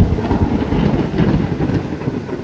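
Thunder after a lightning flash: a sudden loud start, then a steady low rumble, over heavy rain.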